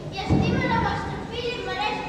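Children's voices speaking, with a low thump about a third of a second in.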